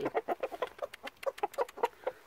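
A buff Silkie rooster giving a quick run of short, low clucks, several a second, as it pecks at feed on the ground.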